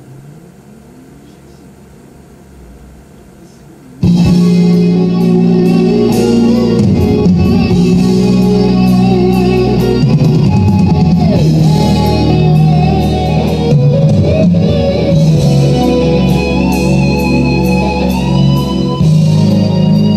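Fisher DD-280 cassette deck playing back a tape: about four seconds of quiet hiss in the gap between songs, then the next song starts suddenly and loudly with guitar. The tape speed is a little off.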